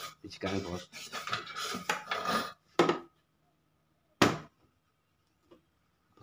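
Mostly a man talking, with cloth rubbing and brief handling knocks as a rag is wiped around the fuel-pump opening of a motorcycle fuel tank; a short sharp knock comes near the middle.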